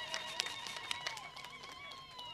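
Paper envelope being handled, with short crackles and clicks of the paper. A faint, sustained, slightly wavering high tone runs underneath.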